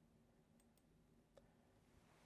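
Near silence: room tone, with a few faint clicks near the middle.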